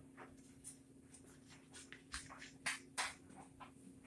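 Light clicks and taps of a vintage bicycle's tank being handled and fitted onto the frame on a repair stand, the two loudest taps about three seconds in, over a steady low hum.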